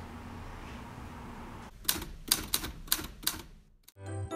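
About six sharp, uneven clicks from an electric oven's control switches and dials being set, over a low steady hum.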